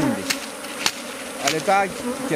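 Honeybees buzzing in a steady hum around an opened Kenya top-bar hive.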